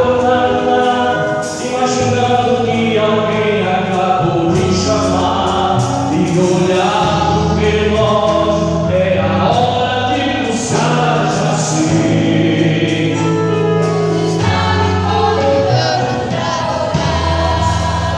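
Live gospel worship song: a male singer on a microphone through the PA, with other voices singing along over steady instrumental accompaniment.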